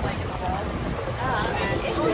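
Small open tour boat's engine running steadily under way, with wind buffeting the microphone and water noise. A voice speaks faintly in the second half.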